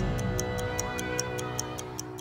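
A TV show's closing theme: a quick clock-like ticking, about five ticks a second, over sustained music.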